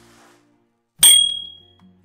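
Bell 'ding' sound effect of a subscribe-button notification animation: one bright ding about a second in, ringing out over about half a second.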